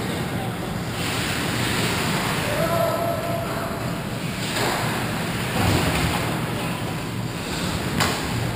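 Hockey skate blades scraping and carving on the ice, echoing in the rink, with louder scrapes about halfway through as players close in on the net. A player gives a short shout about three seconds in.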